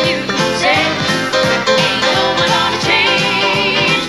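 A live band playing an upbeat country-pop song with a steady drum beat.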